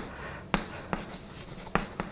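Chalk writing on a chalkboard: three sharp taps of the chalk against the board with faint scraping between them.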